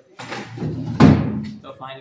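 A single loud bang about a second in, like a door slamming, with a short echo off the hard walls.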